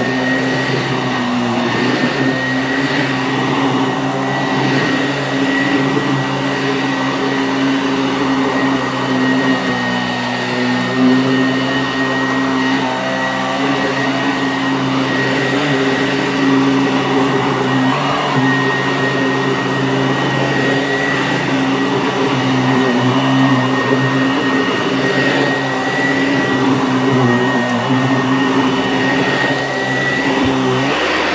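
Sanitaire SC899 upright vacuum cleaner running steadily as it is pushed over carpet: a constant motor hum with a thin high whine.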